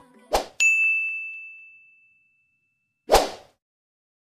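Editing sound effect: a short hit, then a bright bell-like ding that rings out and fades over about a second and a half. Another short hit comes near the end.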